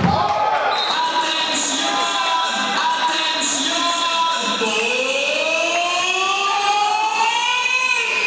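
Background music with a sung melody, cutting in abruptly in place of the sports-hall sound.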